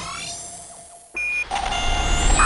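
Electronic TV-ident music with sound effects: a swept whoosh that fades away, a short high beep just after a second in, then a fuller electronic theme with deep bass starting about a second and a half in.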